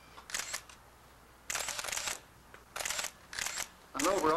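Still cameras taking photographs: four short mechanical whirs, typical of film being wound on by a motor winder after each shot.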